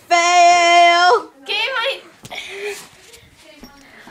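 A girl's voice holding one loud, steady high note for about a second, then a shorter, wavering high call; after that only faint room sounds.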